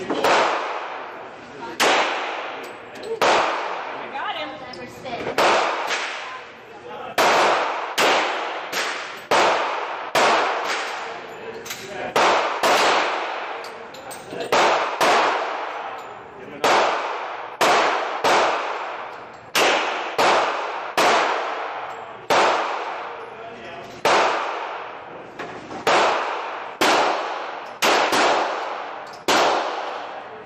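Pistol fired shot after shot on an indoor range, about one shot every one to two seconds, each sharp crack followed by a long echoing decay off the range walls.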